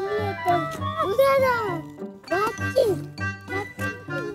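Upbeat children's background music with a steady beat, with a child's voice calling out over it in the first few seconds.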